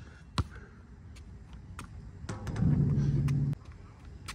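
Basketball bouncing on an outdoor asphalt court, a handful of separate bounces at an uneven pace. A steady low hum comes in a little past halfway and cuts off suddenly about a second later.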